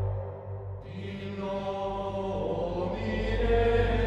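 Gregorian-style chant: sustained chanting voices over a steady low drone. The voices enter about a second in and fill out toward the end.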